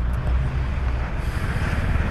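Steady low engine rumble of slow city traffic, with a city bus running right alongside; a faint hiss comes in about halfway through.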